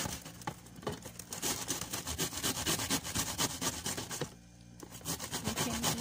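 Kitchen knife cutting through a cucumber: a quick run of short scraping cuts, with a brief pause a little past the middle.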